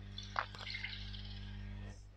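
Milk being poured from a cup into a nonstick saucepan: a faint, soft splashing that fades out near the end as the pour finishes.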